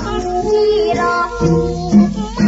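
Old Thai luk thung song recording: a high female voice singing a gliding melody over band accompaniment.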